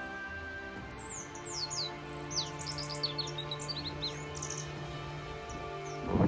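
Birds chirping over steady background music: a run of quick, high, falling chirps from about a second in until past four seconds.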